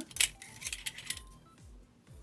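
Thin metal quilling dies clinking against each other as they are handled, with a few sharp clinks in the first second and then quieter.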